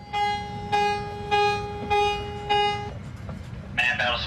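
An alarm horn sounds aboard a submarine: five short pulses of one pitched tone, about half a second apart, and then it stops. A low steady hum runs underneath.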